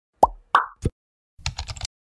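Animated-intro sound effects: three quick pops in the first second, then a short burst of rapid keyboard-typing clicks as the search text is typed in.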